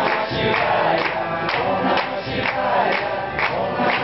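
A group singing a devotional mantra in chorus over a steady beat about twice a second.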